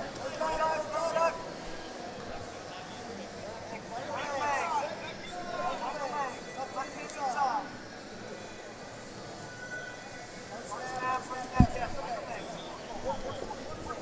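Short bursts of people shouting in a large, mostly empty arena, over a steady low hum of the hall, with one sharp impact about three-quarters of the way through.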